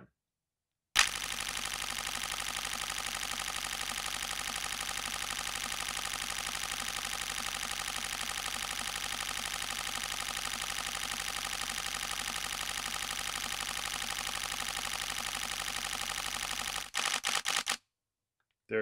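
Nikon D5 DSLR shutter and mirror firing a continuous burst at about twelve frames a second, starting about a second in. Near the end the buffer fills after 193 RAW frames and the firing slows to a few separate clicks.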